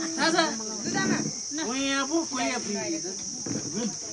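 Several people's voices talking, heard over a steady high-pitched insect chirring.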